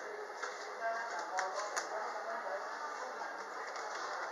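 Faint, indistinct background voices, with a few light clicks between one and two seconds in.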